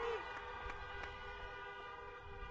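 Many car horns honking together, several steady tones at different pitches held and overlapping: a drive-in audience applauding with their horns.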